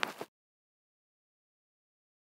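Dead silence: the sound track cuts off abruptly about a quarter second in, after a brief fading tail of sound.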